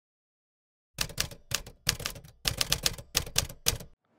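Typewriter sound effect: a quick, uneven run of sharp key clacks, some twenty strokes, starting about a second in and stopping just before the end.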